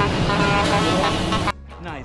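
Road traffic as a cement mixer truck drives past close by, its diesel engine running amid road noise and car horn toots; the sound cuts off abruptly about one and a half seconds in.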